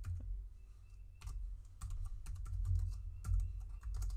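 Computer keyboard being typed on: a run of irregular key clicks as a file name is entered, over a steady low hum.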